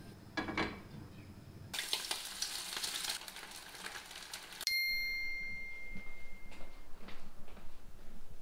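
Food frying in hot oil in a pan on a gas stove: a steady sizzle for about three seconds that cuts off suddenly. Right after, a single bright ding rings out and fades over about two seconds.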